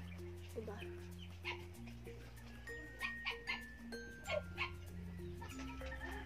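A dog barking a few short times in the background, over soft background music of slow, long-held notes.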